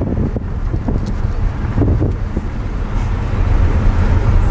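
Steady low rumble of a car driving through city traffic, heard from inside the cabin.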